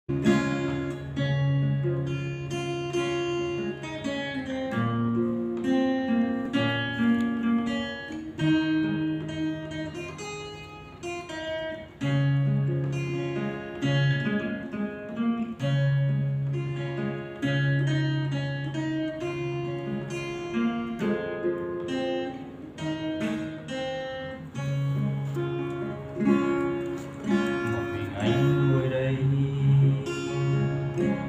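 Acoustic guitar with a capo playing a slow instrumental introduction: single picked notes ringing over held bass notes.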